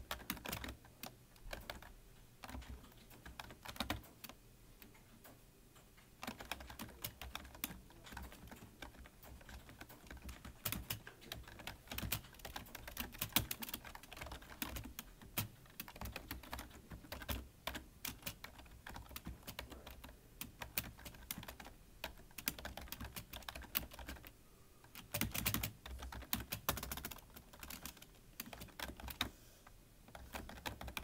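Typing on a black desktop computer keyboard: a continuous run of key clicks, sparser for the first few seconds, with a flurry of fast keystrokes about three-quarters of the way through.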